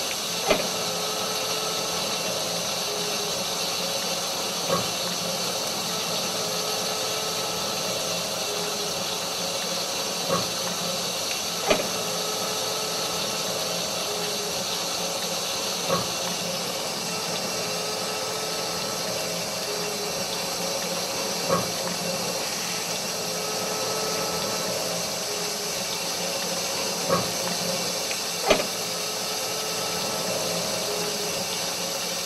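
A steady hiss with a few faint held tones underneath, broken by a short sharp click every few seconds, eight in all at uneven intervals.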